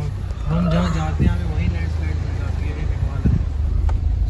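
Car engine and road noise heard from inside the cabin as the car moves slowly over rough ground, a steady low drone with a couple of soft thumps, about a second in and again near the end.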